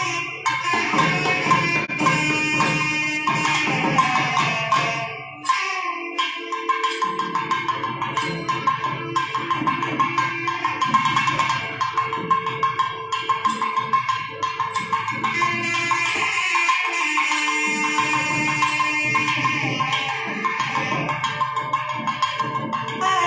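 Nadaswaram playing a sustained, ornamented melody in raga Dwijavanthi, with thavil drum strokes accompanying it. The pipe's line breaks off briefly about five seconds in, and the drumming drops back a little past the middle.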